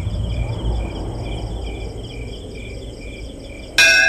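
Insects chirping in an even, pulsing rhythm over a low rumble. Loud music cuts in abruptly near the end.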